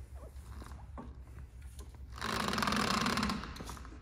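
A buzzing whirr lasting about a second and a half, starting about two seconds in, from an electric aircraft tug's wheels and drive being rolled by hand across a hangar floor with the tug switched off, under a faint steady hum.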